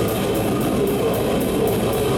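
A death metal band playing live, heard from beside the drum kit: drums and distorted electric guitar together, with cymbal strokes about five a second.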